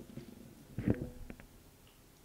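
A pause in the talk: quiet room tone, with one short vocal sound from a person just before a second in, followed by a couple of faint clicks.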